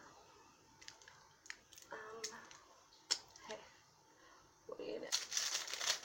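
Plastic wrapping on a bar of soap being handled and opened: scattered small clicks and rustles, then a dense stretch of crinkling and tearing plastic from about five seconds in.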